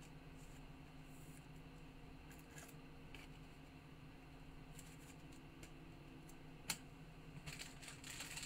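Near silence with faint rustles and small ticks from hands handling cards and sleeves, and one sharper click about seven seconds in. Near the end comes a short spell of crinkling as a foil card pack is picked up.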